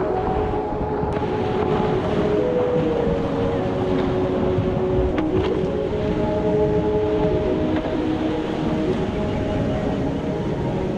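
Steady, loud rush of whitewater around a creek kayak running a flooded rapid. Background music of held notes that change every second or so plays over it.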